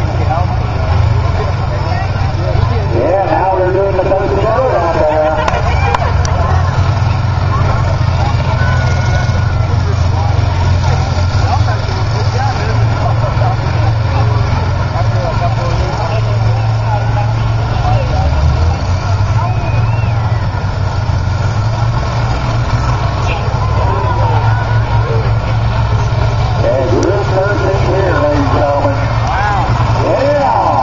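Several combine harvester engines running loud and steady as the machines ram and shove each other in a demolition derby.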